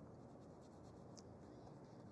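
Faint scratching of a paintbrush on canvas: a few short, light strokes, one a little louder just past the middle.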